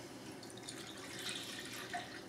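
Lemon juice pouring in a steady stream from a bottle into a glass measuring cup, a faint liquid trickle that swells a little in the second half.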